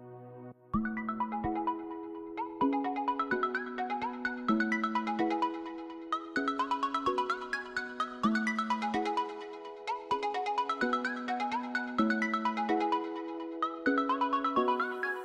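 Background music: a soft passage gives way about a second in to a brisk melodic tune with a steady beat.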